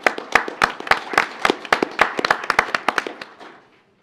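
A small group of people applauding, with separate hand claps that thin out and die away about three seconds in.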